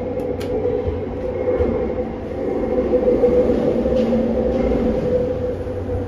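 2001 ThyssenDover hydraulic elevator car travelling: a steady hum over a low rumble, growing a little louder around the middle, with a couple of light clicks right at the start.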